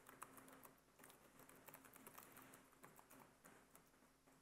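Faint typing on a computer keyboard: a quick, uneven run of key clicks that thins out near the end.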